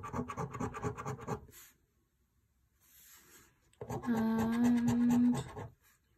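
A coin rubbing rapidly back and forth across the latex of a scratch card, about eight strokes a second, for the first second and a half. Later comes a steady low hum lasting about a second and a half.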